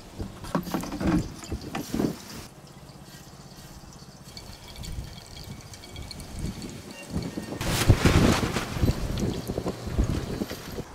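Gusty wind buffeting the microphone, with a strong gust near the end, over a thin stream of oil distillate trickling from the condenser outlet into a container. A few knocks sound in the first couple of seconds.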